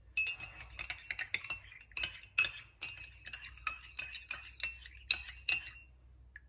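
Metal teaspoon stirring in a ceramic teacup, clinking rapidly and irregularly against the cup's sides, each strike giving a short high ring. The clinking stops just before the end.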